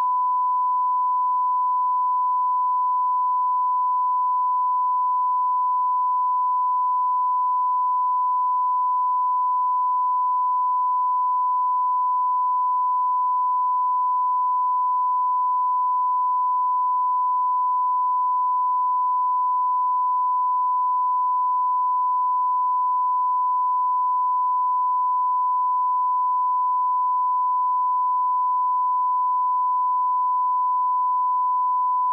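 Continuous 1 kHz broadcast line-up test tone accompanying colour bars. It is a single unwavering pure tone at constant level, the signal used to check a feed before the programme starts.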